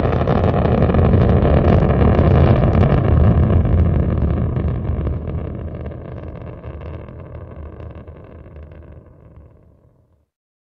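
Low rumble of a spacecraft's rocket engine firing, loud and steady, then fading away over the last five seconds.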